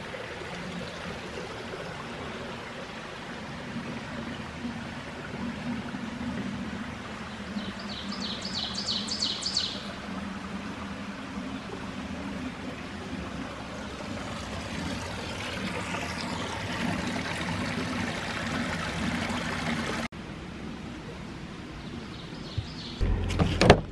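Steady rushing of running water, like a small stream. A brief rapid run of high repeated notes comes near the middle.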